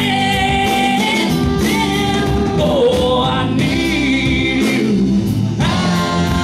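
Live soul band playing a slow ballad: a male vocalist sings long, wavering held notes with no clear words, backed by keyboard and guitars.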